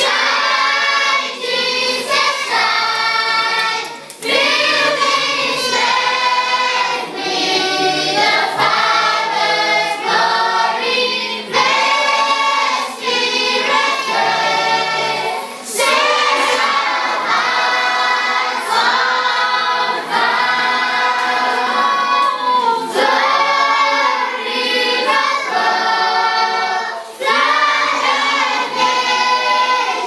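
A choir of voices singing a hymn in continuous phrases with short breaks between lines.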